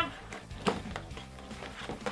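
Cardboard toy box being worked open by hand, with a sharp tap about two-thirds of a second in and a few fainter knocks, over faint background music.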